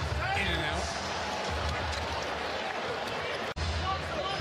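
Arena game sound from a basketball court: a basketball bouncing on the hardwood amid crowd noise. An abrupt cut breaks it about three and a half seconds in.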